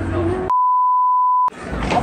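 A single steady, pure beep tone lasting about a second, starting about half a second in, edited into the soundtrack with all other sound dropped out beneath it. Busy street noise with shop music runs before it, and crowd noise follows after it.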